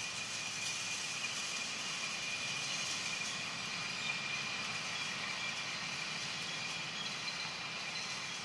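Steady high-pitched forest ambience: an even hiss with a thin held tone running through it, unchanged throughout.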